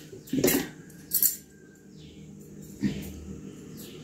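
Bangles on a wrist clinking against each other a few times as the arms are raised to tie up hair: short metallic chinks about half a second in, again a little later, and once near three seconds.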